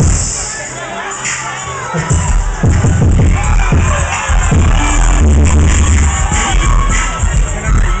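Crowd voices and cheering in a hall, then loud music with a heavy bass beat comes in about two seconds in and carries on under the crowd.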